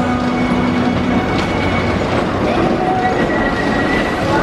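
A wooden roller coaster's Philadelphia Toboggan Coasters train rolling out of the station, its wheels running steadily along the track.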